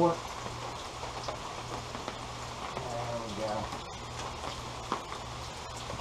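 Steady hiss of running and falling water: rain coming down, with a garden hose flushing water through the engine's cooling system and out an open port, over a low steady hum.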